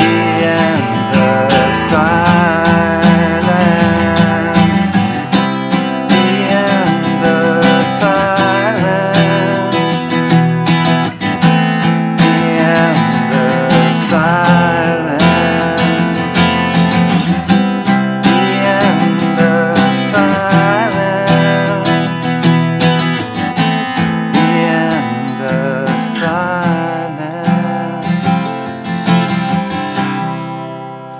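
Acoustic guitar strummed through a chord progression, the bridge of a song in progress, with no lyrics. A wordless hummed melody wavers over the chords.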